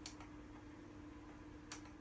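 Near silence: faint room tone with a low steady hum and a faint click near the end.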